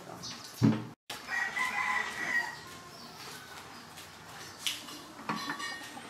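A rooster crowing once, a long held call starting just over a second in, followed by a couple of sharp metallic clicks near the end.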